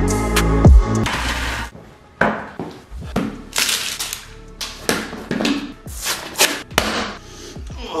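Electronic music that stops about two seconds in, followed by a protein powder tub being opened: irregular crinkling, tearing and knocking as the foil seal is peeled off and handled.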